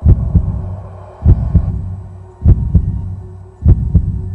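Heartbeat sound effect: four slow double thumps, about one beat every 1.2 seconds, each fading away, over a faint steady hum.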